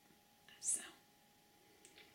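Only speech: a woman softly says the single word "so" about half a second in, with a quiet room around it.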